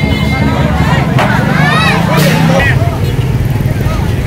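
A street crowd talking and calling out, several voices at once, over a steady low rumble.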